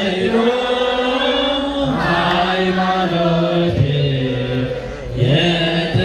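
Many voices chanting an Ethiopian Orthodox hymn (mezmur) in unison, in long held phrases that each fall in pitch at the end.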